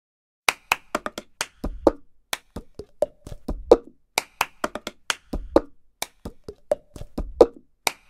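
Cup-game rhythm: hand claps and a cup tapped and knocked on a tabletop, a pattern of sharp clicks with heavier thumps that repeats about every two seconds.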